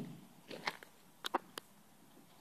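A few short, sharp crunching clicks of footsteps on gravel and dry grass: one about half a second in, then three close together a little later.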